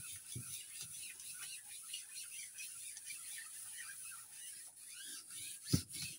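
A baren rubbed in circles over tissue paper on an inked printing plate, giving a soft, irregular scratchy rubbing as the paper is pressed into the ink to take a hand-pulled monoprint. A single sharp knock near the end.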